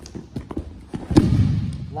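A body landing hard on a wrestling mat as a takedown throw finishes: a heavy thud a little over a second in, after a few lighter scuffs and knocks of feet on the mat.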